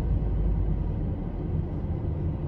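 Steady low rumble of a car being driven, its engine and road noise heard from inside the cabin.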